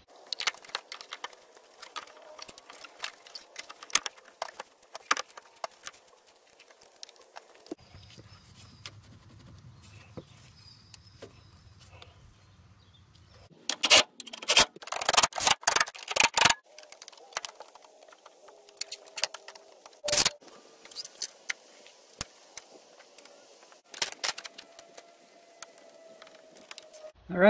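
Hands and tools working a coolant hose and its retaining clip into place in a truck's engine bay: scattered clicks, light knocks and scrapes of plastic and metal. A burst of loud clattering clicks comes about halfway through, and one more sharp click a few seconds later.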